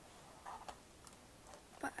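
A quiet pause holding a few faint ticks and a soft sound about half a second in, then a woman's softly spoken word near the end.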